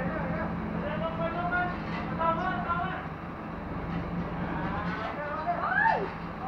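Truck-mounted hydraulic crane's engine running steadily with a low hum, under men's voices talking and calling out; a rising call near the end is the loudest moment.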